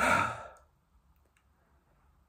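A man's heavy sigh: one breathy exhale of about half a second, from a man worn out between sets of push-ups.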